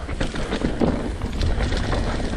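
Alloy Santa Cruz Bronson V3 mountain bike rolling down a dirt singletrack: tyre noise on dirt with a run of quick rattles and clicks from the bike, over a low wind rumble on the microphone.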